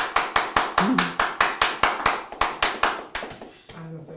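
Hands clapping in a quick, even rhythm of about five claps a second, stopping shortly before the end, with a brief voice sound about a second in.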